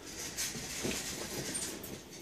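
Quiet handling of metal hydraulic fittings on a concrete workbench: faint scrapes and light knocks as they are moved.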